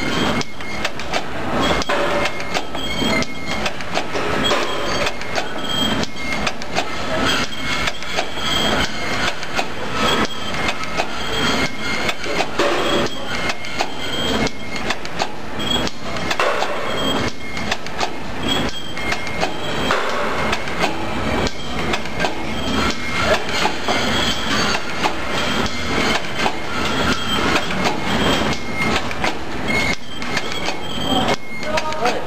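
Tea bag packing machine running, a fast, steady clatter of clicks and knocks from its moving mechanism, with a short high tone recurring about once a second.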